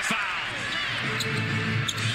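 NBA broadcast arena sound: general arena noise with a steady low musical drone, arena music or an organ-like tone, coming in about half a second in. A couple of short sharp sounds come near the end.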